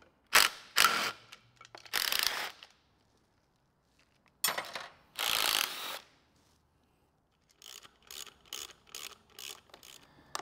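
Hand ratchet clicking as bolts are undone on an engine: a few short bursts, a longer one midway, then a run of lighter, evenly spaced clicks, about three a second, near the end.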